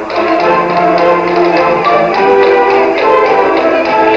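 Junior high school concert band playing: held wind-instrument chords that change every second or so, over a steady light tapping beat about four times a second.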